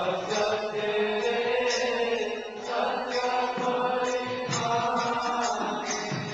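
Devotional chanting sung in long held phrases of about two seconds each, with short breaks between them.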